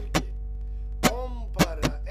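Guitar strummed in a four-four rhythm with the muted 'es' stroke: the strings are silenced by the palm, so each stroke is short and clipped. One stroke comes just after the start, then a gap of nearly a second, then three quick strokes in the last second.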